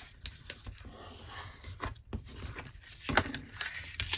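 Scored cardstock being burnished with a bone folder and handled on a craft mat: soft rubbing and paper rustling with a few light, sharp clicks, the loudest a little after three seconds in.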